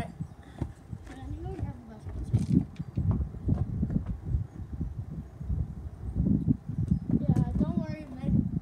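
Footsteps crunching on loose gravel, irregular, with a brief voice near the end.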